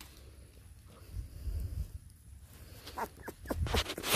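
Very young Maremma–Great Pyrenees puppy giving a few short cries near the end, with low rumbling from the phone being handled as the puppy is picked up.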